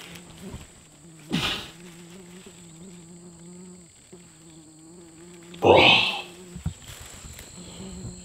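Bees buzzing close to the microphone in a steady low drone, which breaks off briefly about four seconds in. Two loud rustles of plants being handled, about a second in and near six seconds.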